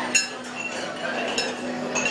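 Tableware clinking at a busy dinner table: three sharp, ringing clinks, the loudest just after the start, over the chatter of diners.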